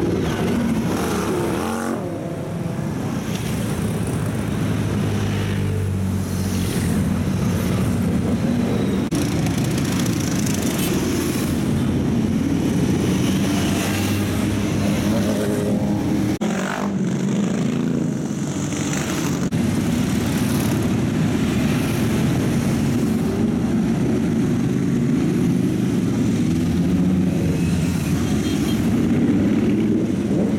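Engines of many motorcycles, cruisers and sport bikes, running together as a long column rides past, a steady dense drone of overlapping exhausts with no break.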